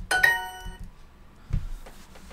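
Duolingo's correct-answer chime: a bright ding that rings out and fades over about half a second. A soft knock follows about a second and a half in.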